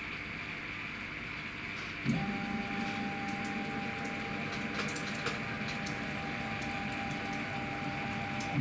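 CNC router's Z-axis stepper motor jogging the spindle down toward the touch plate: a steady electric hum with a higher steady note above it, starting about two seconds in and running on.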